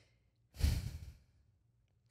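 A woman's single breathy sigh into a close microphone, lasting under a second.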